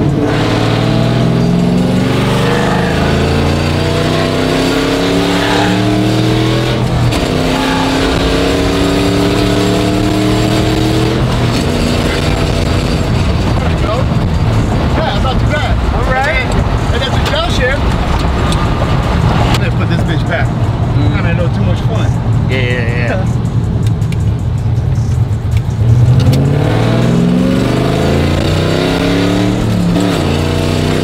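Chevy cateye pickup engine heard from inside the cab as the truck accelerates through the gears of its sequential T56-style manual. The pitch climbs, drops at each shift and climbs again, several times in the first dozen seconds and again near the end. In between, the engine and road noise run steadier, with a brief loud jolt about 26 seconds in.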